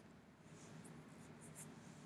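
Near silence: room tone with a faint click at the start and a few soft, faint rustles about half a second to a second and a half in.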